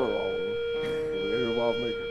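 An amplified electric guitar holds one steady, unwavering note. A brief voice sounds over it about a second and a half in.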